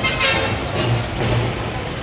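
Street traffic noise with music playing underneath, its low bass notes held for a moment at a time.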